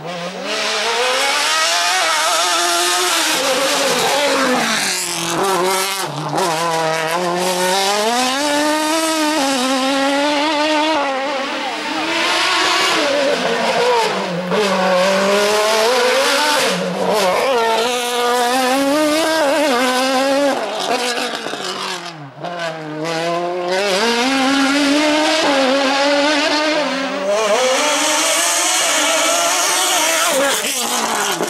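Radical SR4 sports-prototype race car engine at high revs through slalom chicanes. The engine note climbs and drops again and again as the car accelerates and brakes between the cones.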